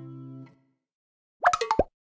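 A held chord of the programme's closing music ends about half a second in. Near the end comes a quick run of about four short electronic plops, each falling in pitch, much louder than the music.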